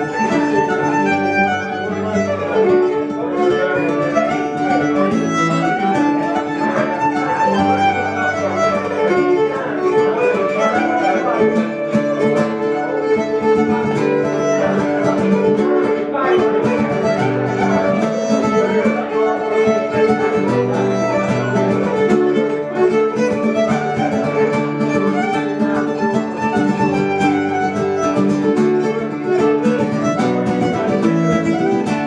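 Fiddle playing a jig melody over strummed acoustic guitar accompaniment.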